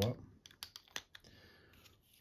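A quick run of small sharp clicks as AAA batteries and the metal parts of a pen-style UV flashlight are handled while the batteries are seated in its tube.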